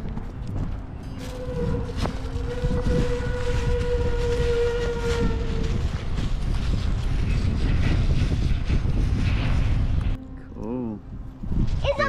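Footsteps crunching on loose gravel ballast, with wind rumbling on the microphone. A steady held tone sounds for about four seconds starting about a second in, and a child's voice calls near the end.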